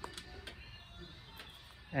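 Quiet room tone with a few faint clicks and light handling noise from multimeter test leads being picked up.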